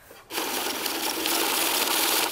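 Electric bill counting machine running, riffling a stack of banknotes rapidly through its rollers in a steady whir that starts about a third of a second in.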